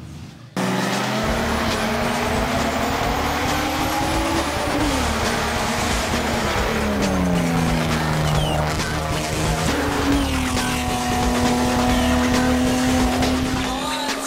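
BMW E36 race car's engine running hard at high revs. It cuts in suddenly about half a second in, and its pitch climbs, falls away twice, then holds steady through the last few seconds.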